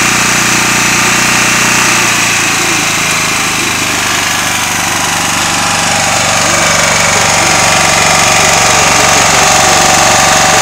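Small engine of a DeWalt 4300 machine running steadily. Its pitch shifts slightly about two seconds in, and it grows a little louder over the second half.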